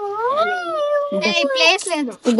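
A child's high-pitched voice in a long drawn-out, wavering whine that rises and falls for about a second, followed by quicker high-pitched chatter.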